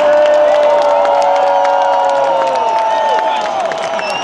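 Large concert crowd cheering and clapping, with many overlapping high held shouts and screams.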